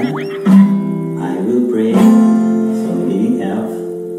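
Acoustic guitar strummed in open chords, each chord left ringing between strokes. The loudest strum comes about half a second in, with another strong one about two seconds in.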